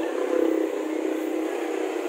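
Motor vehicle engine running steadily near the roadside, a low even hum that swells briefly about half a second in.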